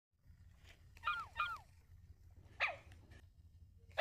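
Sony aibo robot dog making short electronic puppy yips with bending pitch: two quick ones about a second in, a longer one past halfway, and another at the very end. A low steady hum runs underneath.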